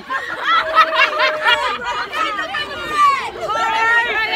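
A group of teenagers' voices, chattering and calling out over one another, high-pitched and excited.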